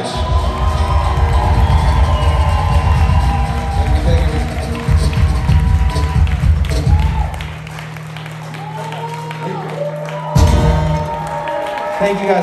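Acoustic band with strummed acoustic guitars and cajon playing the closing bars of a song, with a last accented hit about ten seconds in. The audience cheers and whoops as the song ends.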